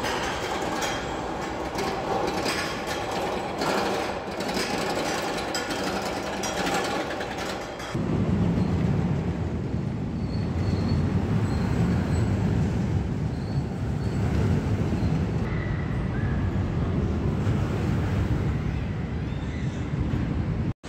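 Steel roller coaster trains running on their track: clattering rattles at first, then from about eight seconds in a heavy, steady low rumble.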